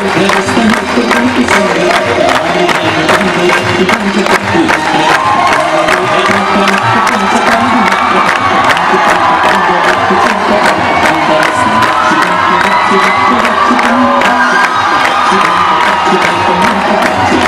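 Devotional aarti music with a large crowd singing and cheering along, loud and unbroken, over a steady quick beat of sharp strokes.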